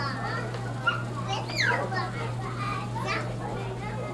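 A toddler's high-pitched babble and short sliding squeals, with the clearest ones about a second and a half in, over a steady low hum.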